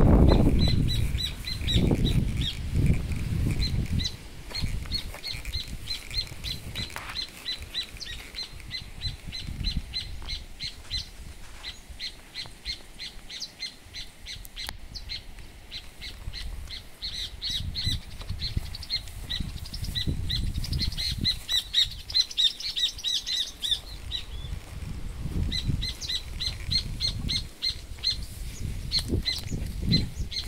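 A bird calling over and over with short high chirps, about three a second, with a pause around the middle and a denser run later on. Low rumbling bursts of noise come and go under it, strongest at the start.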